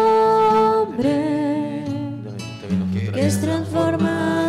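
Offertory hymn sung by a woman with acoustic guitar accompaniment: a long held note that glides down into a new phrase about a second in, with a short breath pause near the middle.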